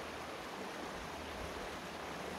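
Steady rush of a shallow creek running over rocks.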